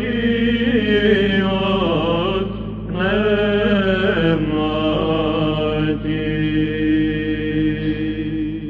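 A solo male cantor sings a Greek Orthodox Byzantine hymn in the plagal second mode, with ornamented, melismatic lines over a steady low drone. There is a brief break for breath about two and a half seconds in.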